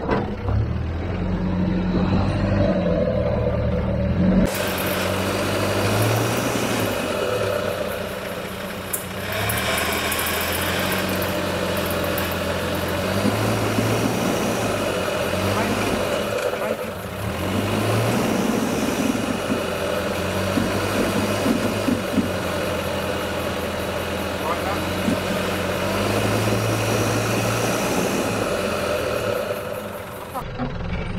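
Land Rover Discovery 1's 300Tdi turbo-diesel four-cylinder engine running at low revs as the truck crawls over rocks, the revs rising and falling with the throttle.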